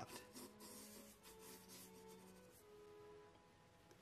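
Faint scratching of a mechanical pencil drawing on sketch-pad paper, a run of short strokes that stops about two and a half seconds in, over soft background music with a few held notes.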